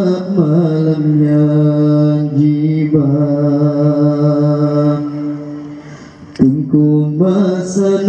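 A solo male voice chants an Acehnese qasidah into a microphone, holding long, ornamented notes. One phrase fades out about six seconds in, and after a short break a new phrase begins.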